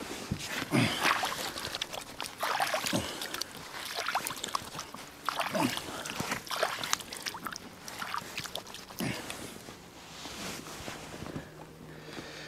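Handling noise in a small fishing boat as a man works over its side: scattered light knocks and rustling, with four short falling squeaks.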